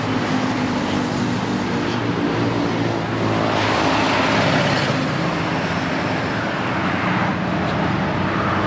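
Road traffic: a steady engine hum, with tyre and engine noise swelling as a vehicle passes about halfway through.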